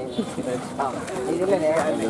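People talking, voices that come and go and overlap.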